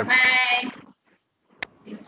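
Voices of video-call participants saying farewells: a drawn-out, wavering 'thank you' in the first second, then a short gap with a single click, and another voice starting near the end.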